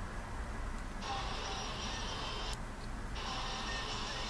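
Small phone speaker playing the audio of an in-car driving video in two short stretches, each about a second and a half long, the first about a second in and the second just after three seconds. Each starts and stops abruptly as playback is started and stopped.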